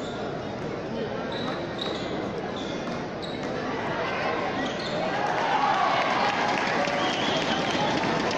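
Frontball rally in a large hall: the rubber ball smacks against the front wall and court floor over the constant chatter of a large crowd. About five seconds in, the crowd grows louder with shouts and cheers.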